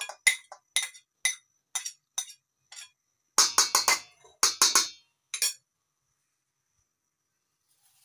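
A spoon clinks against a glass bowl about twice a second as shredded chicken is scraped out into a steel mixing bowl. Then come a couple of seconds of louder spoon clatter in the steel bowl, which stops a few seconds before the end.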